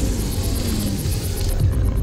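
Deep, steady low rumble of trailer sound design with dark music, a tone sliding downward in the first half.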